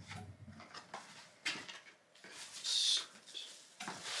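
Packaging being handled and unwrapped: scattered rustling and crinkling with a few light knocks, and a longer crinkle about two and a half seconds in.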